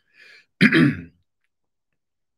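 A man clearing his throat once, a short rough burst about half a second in.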